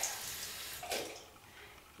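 Bathroom basin tap running, water splashing into the sink as a toothbrush head is wetted under it, then the tap is turned off about a second in.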